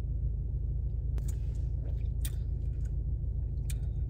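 Drinking from a plastic bottle: a few soft gulping and swallowing clicks over the steady low rumble of a car running.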